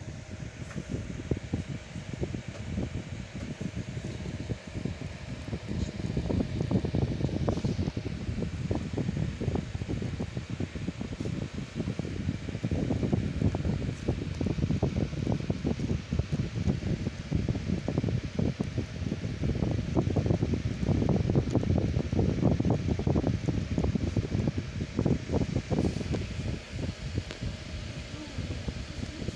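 Moving air, most likely from a room fan, buffeting the microphone: an irregular, fluttering low rumble that gets louder about six seconds in and holds there.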